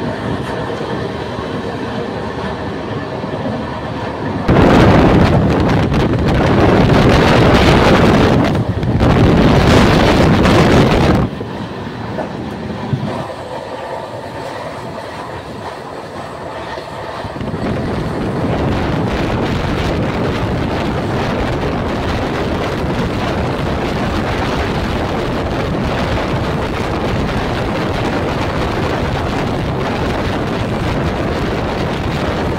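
Moving air-conditioned passenger train heard from an open coach door: a steady running rumble and rush with wind on the microphone. A much louder rushing stretch lasts several seconds, starting a few seconds in.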